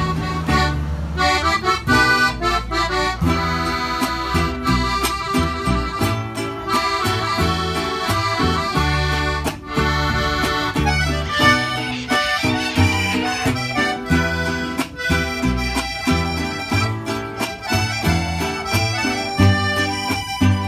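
Live mariachi-style trio playing an instrumental passage: a piano accordion carries the melody over a strummed acoustic guitar and a plucked upright bass.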